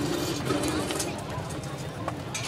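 Indistinct voices over outdoor crowd noise, with a few short knocks and no drumming.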